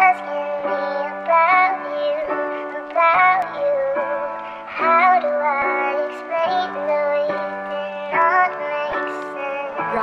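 Music: the intro of a pop/R&B song, a high, pitched-up, voice-like synth melody over sustained chords, with no drum beat. Its notes change about every second, with short pitch slides where the phrases start.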